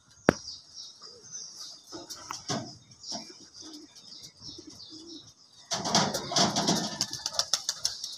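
Pigeons on a corrugated metal roof: a sharp click just after the start, then about two seconds of rapid wing flapping near the end.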